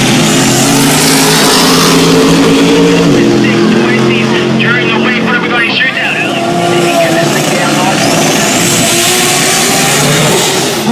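Drag-racing car engines running loud down a drag strip, with a rising engine note near the end.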